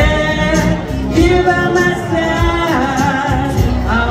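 A woman singing karaoke into a microphone over a recorded rock backing track, holding long notes.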